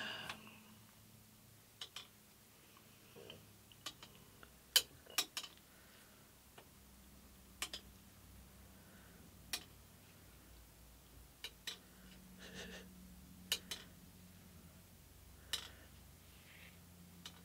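Faint, irregular clicks and taps, about ten of them, as a thin, soaked wooden guitar-side strip is pressed and rocked against a hot metal bending iron by gloved hands.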